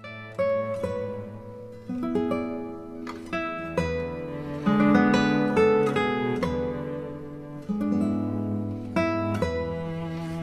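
Background music: a plucked string instrument playing slow notes and chords, each struck and left to ring out.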